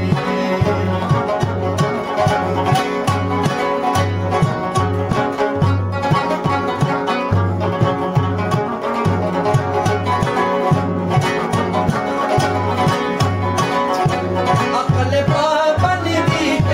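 Instrumental passage of a Burushaski ginan: a rubab plays a plucked melody over a steady beat on a daf frame drum. The voice comes back in near the end.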